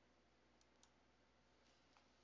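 Near silence with two faint clicks a quarter second apart, a computer mouse button pressed and released.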